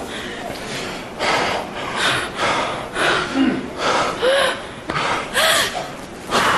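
A person gasping for breath over and over, about one loud heaving breath a second, with a couple of short voiced cries in the second half.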